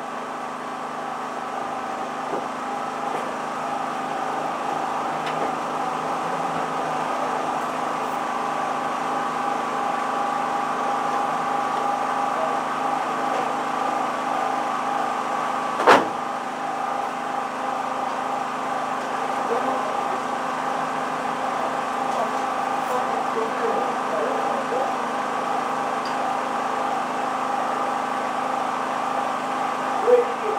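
Race car engine running steadily at constant revs, a steady hum that grows a little louder over the first several seconds. One sharp click about halfway through.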